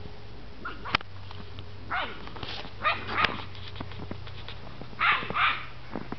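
Puppies giving short, high yips and barks, about six in all, the last two close together and the loudest.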